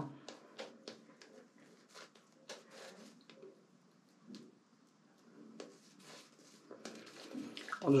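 Synthetic shaving brush working lather over the face: quiet, soft squishing strokes, with a pause of a second or so near the middle before the brushing resumes.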